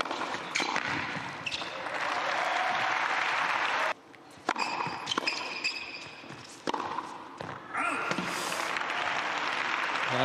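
Tennis ball being struck by rackets and bouncing on an indoor hard court during a rally, as separate sharp knocks from about four and a half seconds in. Before that, a steady crowd noise like applause runs until a sudden cut about four seconds in.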